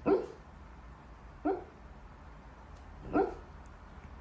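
A dog giving three short barks, about a second and a half apart.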